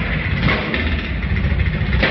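Live drum kit played fast, its bass drum strokes so rapid they run together into a steady low rumble under cymbal wash, heard through a phone recording with a dull top end.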